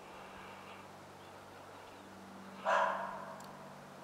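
A single short animal call, a bark, about two-thirds of the way through, over a quiet background with a faint steady hum.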